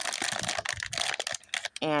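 Plastic cereal bag crinkling and rustling as a hand grips and folds it: a dense, quick run of crackles, then a voice near the end.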